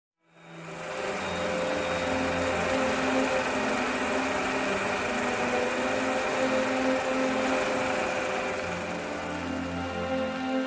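Intro music with long held tones, fading in at the start.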